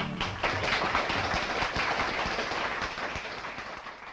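Audience applause breaking out as a traditional pipe tune ends, fading out over the last second or so.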